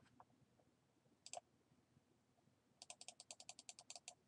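Faint computer mouse clicks: a single click at the start, a quick double click just over a second in, then a fast even run of about a dozen ticks near the end.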